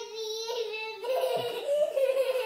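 A young child's high-pitched voice held in one long, drawn-out squeal, its pitch wavering near the end.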